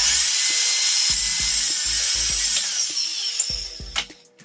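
Handheld power saw cutting through a wooden board, a loud rasp with a faint whine that starts suddenly and eases off slightly near the end.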